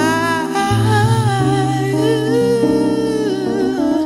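A voice humming a wordless, sliding melody over sustained Rhodes electric piano chords, with the chord changing near the end.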